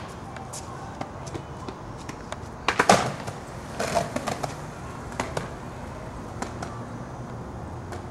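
Skateboard put down on concrete with a loud clack about three seconds in, then wheels rolling with a low rumble and a few more knocks of the board and feet.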